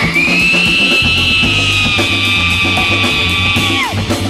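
Live funk band playing an instrumental groove over a steady bass line, with one long high held note that holds steady and then slides down near the end.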